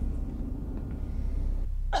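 Low steady rumble from the film's soundtrack, then near the end a woman's single sharp cough.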